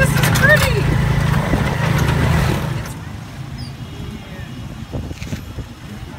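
Motorcycle-drawn tuk-tuk running along a road: a steady low engine drone, with a woman's voice over it at the start. About three seconds in it gives way abruptly to quieter street ambience with a few light knocks.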